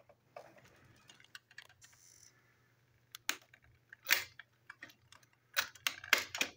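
Plastic toy Edward engine and tender being handled: a scatter of small plastic clicks and knocks, the loudest about four seconds in and a cluster near the end, as the tender is uncoupled and the engine is gripped to be taken apart.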